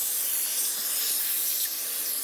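Household vacuum cleaner running with an extension nozzle, sucking dust out of the inside of a desktop PC case: a steady hiss of rushing air.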